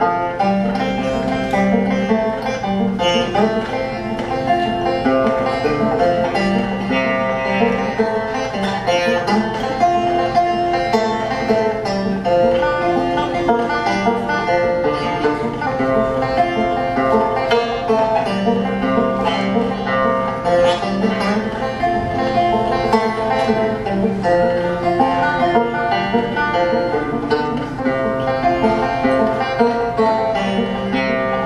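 Banjo playing an instrumental break in a folk song: picked notes in a steady rhythm, with a short melodic phrase that repeats every few seconds, heard through the stage PA.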